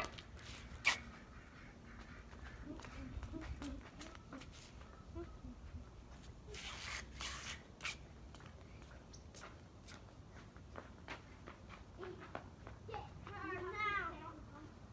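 Quiet outdoor backyard ambience with a few light footsteps and soft ticks, a brief rush of noise about seven seconds in, and a faint voice near the end.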